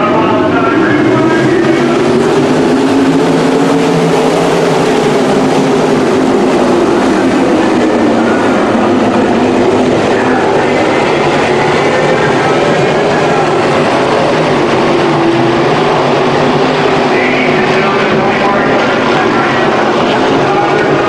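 A pack of winged sprint cars racing on a dirt oval, their V8 engines running loud and steady in a dense, overlapping drone, the pitch swelling and falling as cars pass through the turns.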